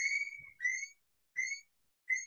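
Three short whistled notes at about the same pitch, each rising slightly at the end. The first is the longest, and there are silent gaps between them.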